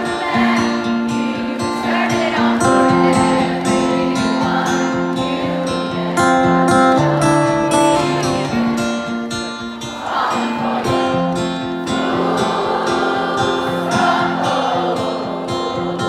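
Acoustic guitar strummed steadily while a large audience sings the melody together, with no lead voice at the microphone.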